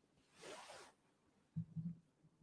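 Near silence on a gated call line, broken about half a second in by a brief faint rasping sound, then a short low voice sound near the end.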